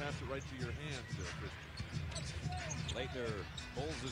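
Game sound of a televised NBA basketball game, played quietly: a basketball dribbled on the hardwood under arena crowd noise, with a broadcast announcer talking faintly.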